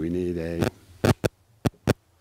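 A person humming a short wordless note for about half a second, followed by a few short sharp clicks or taps.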